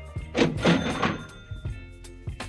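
A short cash-register sound, loudest about half a second in and gone by about one second, over background music with a steady beat.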